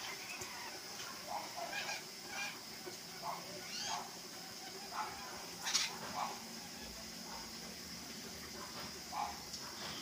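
Toucans giving short, separate calls, about a dozen of them at irregular intervals, the loudest a little over halfway through.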